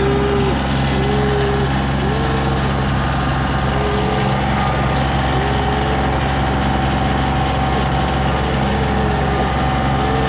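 Kioti CK2510 compact tractor's three-cylinder diesel running steadily close by, with a steady whine over it and short higher notes that recur about once a second.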